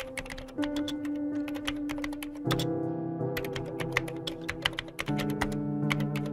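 Rapid typing on a computer keyboard, a fast, uneven run of clicky keystrokes. Under it runs background music of held chords that change every two seconds or so.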